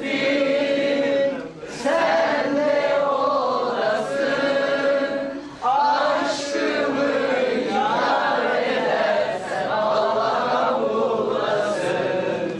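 Music: a song with singing voices in long held phrases, with brief breaks between phrases.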